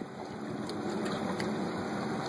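Steady low hum of a tow boat's engine running slowly, with water washing along the hull.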